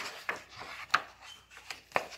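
Paper pages of a picture book rustling as the book is handled, with a few sharp taps, the loudest near the end.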